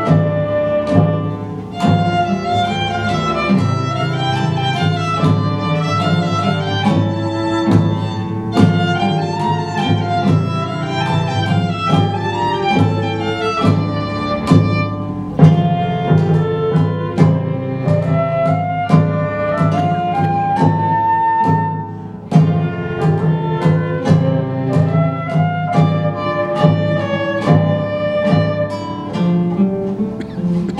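A small ensemble playing live. A violin and flute carry a lively melody over a sustained low accompaniment, with regular drum strokes keeping the beat.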